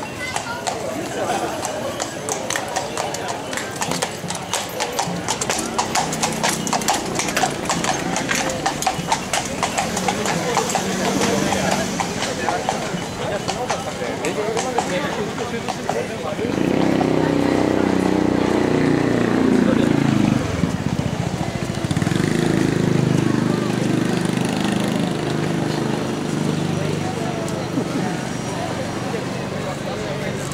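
A horse's hooves clip-clopping on the asphalt as it walks past pulling a carriage, among crowd voices. About halfway through a louder low rumbling noise takes over and lasts almost to the end.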